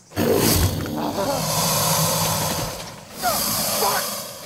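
American alligator hissing loudly with its jaws wide open as a defensive threat, with a low rumble under the hiss. The hiss breaks in suddenly, runs for over two seconds, then comes again about three seconds in.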